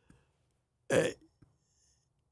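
A man's single short, guttural "uh" of hesitation about a second in, within an otherwise silent pause in the talk.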